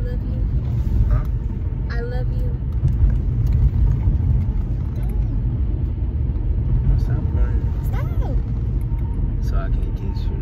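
Steady low rumble of a car's engine and tyres heard from inside the cabin while driving, with a few faint, brief voice sounds over it.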